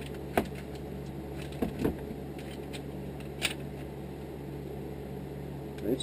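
A few short, sharp clicks and taps of a molded kydex knife sheath assembly being handled and snapped together, over a steady low hum.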